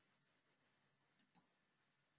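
Near silence, broken a little past halfway by two faint, quick clicks of a computer mouse.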